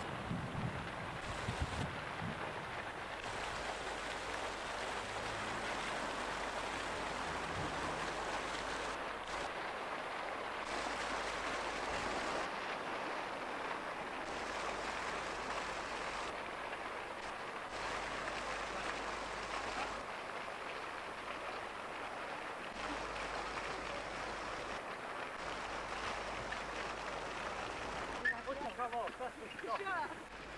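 Steady rushing noise with no distinct events, and brief voices near the end.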